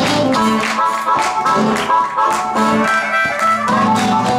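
Live blues band playing: electric guitar and harmonica over drums. The low end drops out about half a second in and comes back just before the end.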